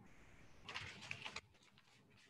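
Near silence: faint room sound over a video-call line, with a brief patch of faint high-pitched noise before the line goes almost dead about two-thirds of the way through.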